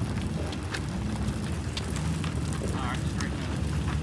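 Drag-strip background: a steady low rumble with people's voices nearby and a few scattered clicks.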